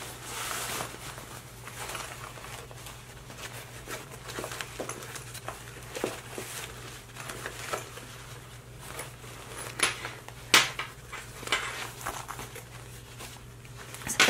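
A fabric bag with foam interfacing and a zipper being handled and turned right side out. It gives soft rustling and crinkling, with scattered light clicks, the sharpest about ten and a half seconds in.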